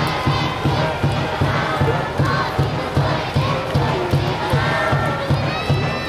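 Japanese college baseball cheering section chanting and shouting in unison over a steady drumbeat of about two beats a second.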